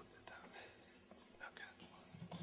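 Near silence in a hall, with faint murmured voices and a few light handling noises near the lectern microphone.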